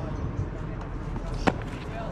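A single sharp pop about one and a half seconds in: a pitched baseball smacking into a catcher's leather mitt, over a steady low background of outdoor noise.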